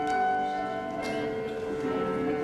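Piano accompaniment: chords struck at the start and again about a second in, each left ringing.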